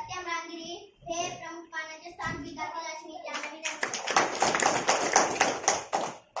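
Children's voices for the first few seconds, then, about three and a half seconds in, a group of people clapping for about two seconds.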